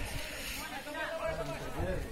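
Faint, distant voices calling out and chattering across an open football field, with low outdoor rumble.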